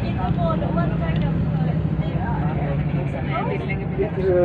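Tour bus engine running steadily, a low hum heard from inside the cabin, with passengers talking faintly over it.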